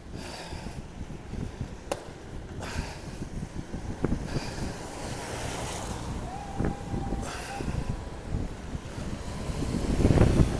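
Cyclone wind gusting across the phone's microphone, a rough, buffeting rumble over the hiss of traffic on the wet road, with a short steady tone about two-thirds through. A car passes close near the end.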